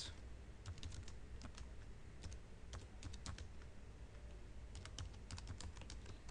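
Typing on a computer keyboard: irregular runs of key clicks with short pauses between them, over a steady low hum.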